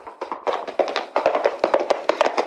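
A rapid, irregular clatter of many sharp knocks, several each second and overlapping.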